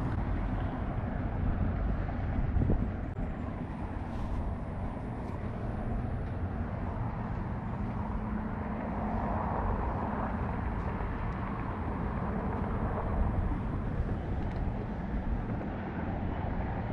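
Steady low rumble and hiss of outdoor background noise, with a couple of faint clicks about four and five seconds in.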